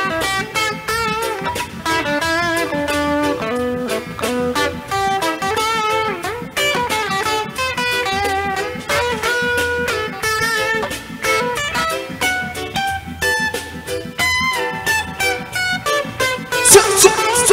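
Band playing an instrumental passage: an electric guitar picks out a wavering melody over bass, keyboard and a steady drum beat.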